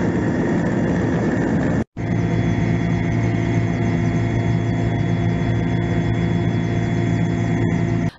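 Helicopter in flight, heard from inside the cabin: a steady drone of engine and rotor. There is a brief break about two seconds in, where two clips are joined.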